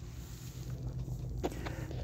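Quiet room tone with a steady low hum, and one faint tap about one and a half seconds in.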